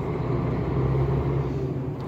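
KAMAZ truck's diesel engine running steadily while driving, a low drone with road noise, heard inside the cab.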